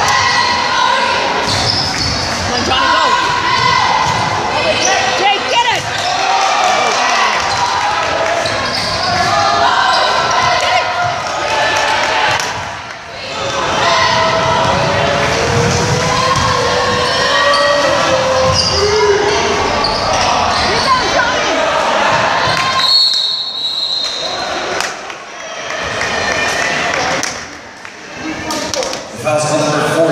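Basketball game sounds in an echoing gym: a basketball dribbled on the wooden floor amid a crowd's shouting voices, with a few brief quieter dips.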